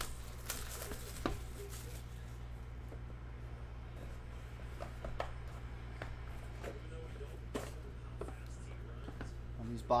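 Plastic wrap crackling as it is peeled off a cardboard trading-card box during the first couple of seconds. Scattered light clicks and taps follow as the box lid is lifted and the inner box is handled, over a steady low hum.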